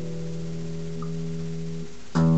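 Music: a held guitar chord ringing on, its notes sustaining steadily with no new strum.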